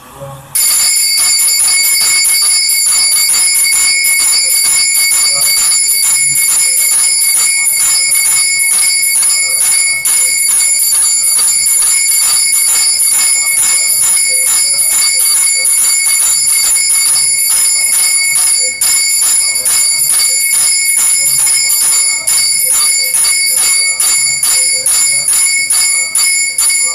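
Temple bells ringing loudly and continuously with rapid, even strokes, the ringing that accompanies an aarti lamp offering; it starts suddenly about half a second in.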